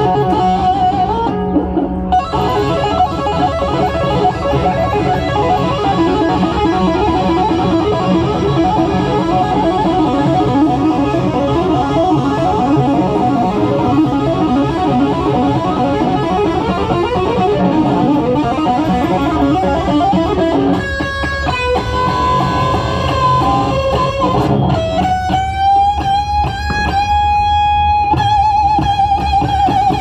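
Electric guitar solo on a Les Paul-style guitar over a live rock band's bass and drums: quick runs of notes, then a few held notes about two-thirds through, ending on one long sustained note with vibrato.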